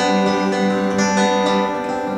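Live acoustic folk band music: strummed acoustic guitars under a long held note that fades near the end.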